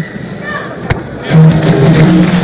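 Basketball arena crowd noise with one sharp knock just before a second in. Then a steady held low musical note comes in and carries on.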